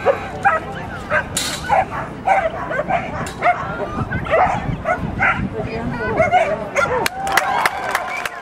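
A dog barking and yipping in short, repeated calls, a few each second, as it runs an agility course, over voices and crowd noise.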